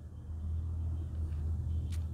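A steady low rumbling hum in the background, with a short click near the end.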